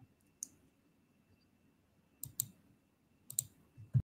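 A few small sharp clicks: a single one early, then two close pairs about two and a quarter and three and a third seconds in, and one more near the end. Between them is quiet room tone with a faint steady high whine.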